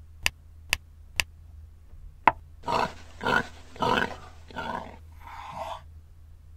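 Four sharp clicks in the first two seconds, then five short, rough, animal-like growling bursts in quick succession, typical of an added sound effect.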